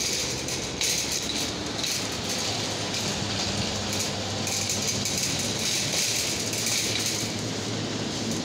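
Wire shopping cart rattling steadily as it is pushed over a ribbed entrance mat and hard floor.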